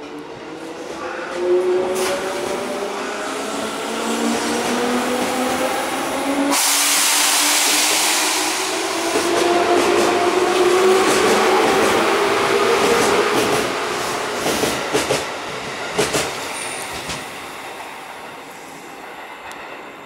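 JR 205 series electric train pulling out of a station: the whine of its DC traction motors and gears rises steadily in pitch as it accelerates. A louder rush of running noise sets in about six seconds in, and a few sharp wheel clacks come near the end as the last cars pass before the sound fades.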